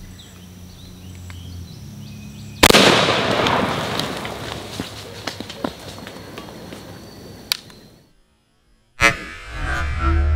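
A single 12-gauge shotgun shot firing a one-ounce slug, about two and a half seconds in, with a long echo fading over several seconds. Near the end, after a brief silence, another loud burst starts.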